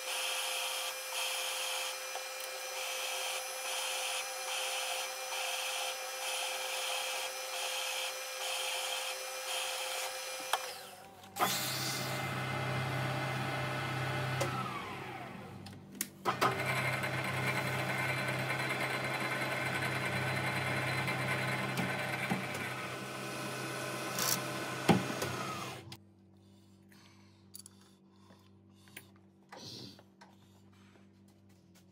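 Milling machine spindle drilling 5 mm holes radially into a metal lathe back plate, running steadily with a regular pulsing for about ten seconds before stopping. It starts again with a deeper hum and a falling whine, runs steadily, and stops about 26 seconds in, leaving only a few faint clicks.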